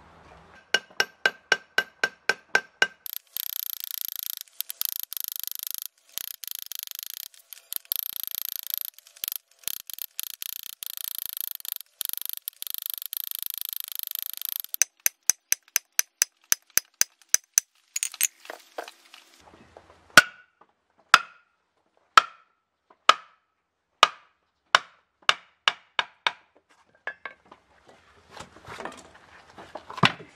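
Hammer striking a steel cold chisel against a concrete block, chipping along a marked circle to cut a hole. It opens with quick ringing taps, goes into a long run of dense, rapid rattling taps, then fast taps again, then slower single ringing blows about one a second.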